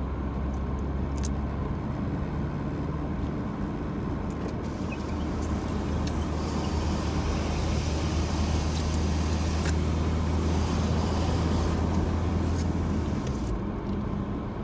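Car engine and road noise inside the cabin while driving: a steady low drone, with a hiss that builds about six seconds in and fades near the end, where the low drone also drops away.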